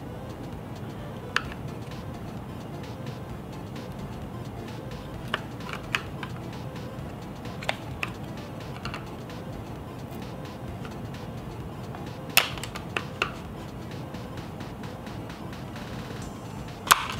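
Scattered sharp plastic clicks and taps as a flathead screwdriver pries a 2018 Subaru WRX dash vent out of its plastic trim bezel, the loudest click about twelve seconds in, over quiet background music.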